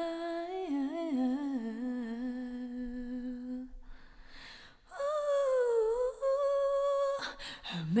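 A woman's unaccompanied voice singing a low, wordless, hummed-sounding line: a long held note with a wavering run near the start, a breath about four seconds in, then another long held note that dips and settles.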